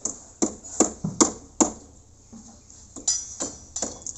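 Hammer blows in a steady run of about five, roughly two and a half a second. After a short pause come a few more, the first with a bright metallic ring, as workers hammer at the formwork and steel of a concrete tie beam.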